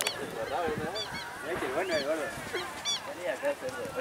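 Several voices shouting and calling out over one another, rising and falling in pitch.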